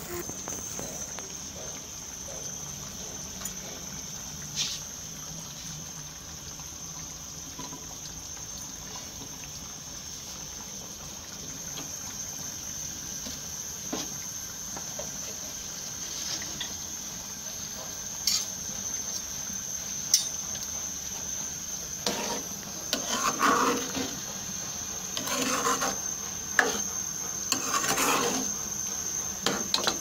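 Kitchen cooking sounds: a steady low hiss of a pan over a low gas flame with a few light clicks. In the last third comes a run of clinks and scrapes of a metal ladle against a steel cooking pot.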